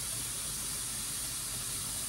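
Steady hiss of steam venting from the open vent pipe of an aluminium pressure canner, the venting stage that purges air before the weight is put on.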